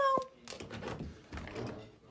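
A brief high-pitched vocal call ends with a click at the start, then a blanket rustles and thumps softly as the phone is moved against the fleece bedding.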